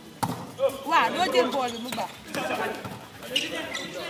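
Volleyball struck by a player's hands in a rally, a sharp slap about a quarter second in with a few lighter hits after, while players shout and call out over the play.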